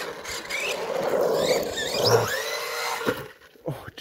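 An Arrma Big Rock RC monster truck's brushless electric motor whines, rising in pitch as the truck speeds up, more than once. The sound drops away briefly near the end.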